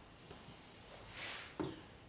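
Faint rubbing of a damp thumb on the rim of an upturned leather-hard clay tankard, smoothing off the bevelled corner, with a soft swish about a second in. A short soft knock follows shortly after.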